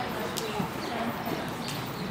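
Horse's hooves clip-clopping at a walk on arena footing, with a couple of sharper hoof clicks, while people talk in the background.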